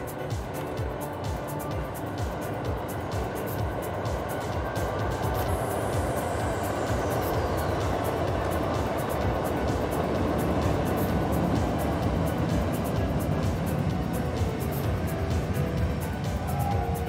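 Background music over the running noise of a Keikyu electric train crossing a steel truss bridge, the rumble growing louder as the train comes across.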